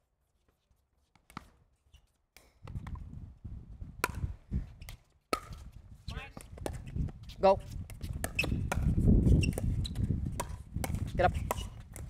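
Pickleball paddles popping against a plastic ball in a rally: several sharp hits, the clearest about four and five seconds in, over a low rumble that grows towards the middle. Short calls are heard near the end.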